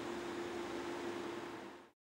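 Street ambience with a car driving by: a steady hiss-like noise with a faint steady hum, fading out near the end.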